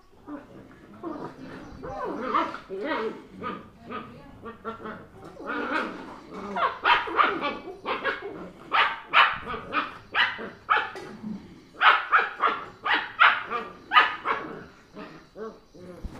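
German Shepherd and Labrador puppies yipping and barking in a run of short, high calls, one or two a second, from about two seconds in until just before the end. They are play-fighting through the mesh of a cage, just playing and not really biting.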